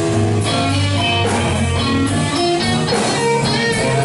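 Live blues-rock band playing an instrumental passage: an electric guitar plays a lead line over drums and bass, with a note bent near the end.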